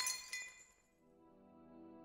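A ringing, clinking transition effect dies away in the first half second or so, then soft ambient background music fades in.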